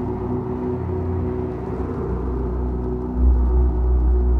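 Dungeon synth music: slow, sustained synthesizer chords held steady. About three seconds in, a deep bass note swells in and the music gets louder.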